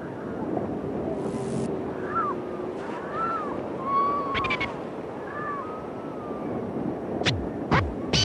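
Harp seals calling: a run of short arched calls, each rising then falling in pitch, over a steady background, with a few sharp clicks near the end.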